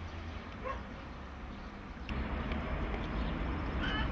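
Outdoor ambience with a steady low rumble, a short distant animal call about two-thirds of a second in and another brief high call near the end. The background noise grows louder about two seconds in.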